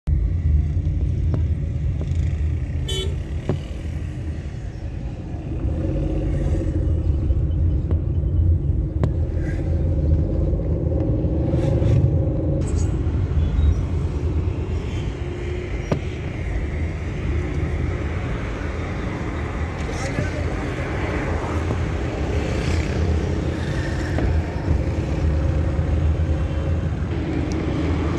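Road traffic heard from inside a moving vehicle: a steady low engine and road rumble, with car horns honking.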